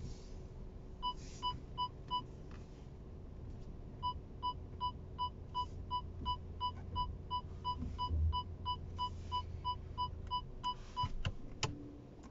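Audi A4 Avant's parking-sensor warning beeping at about three beeps a second as an obstacle is detected during parking: a short run of four beeps, a pause, then a long even run that stops near the end. A sharp click follows the last beep.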